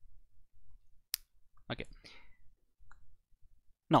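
A single sharp click from a computer mouse about a second in, with a fainter tick near three seconds, as the document is moved on screen.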